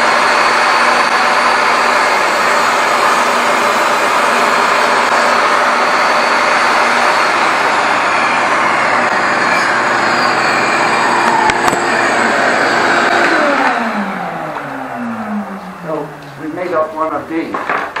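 DeWalt jobsite table saw switched on, running at full speed while a small wooden block is cut off. About 13 seconds in it is switched off and winds down, its whine falling in pitch over a few seconds.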